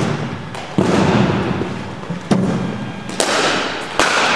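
Cricket balls striking a bat and the floor and netting of an indoor practice hall: a run of sharp knocks and thuds, about five in four seconds, each trailing off in the hall's echo.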